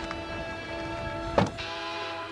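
Background music holding a steady chord. About one and a half seconds in there is a single loud thump, a car's tailgate being pulled shut.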